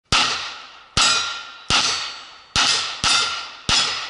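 A string of six pistol shots fired at steel plates, each sharp crack followed by the ring of the struck steel fading over most of a second. The shots come at an uneven pace, about half a second to just under a second apart.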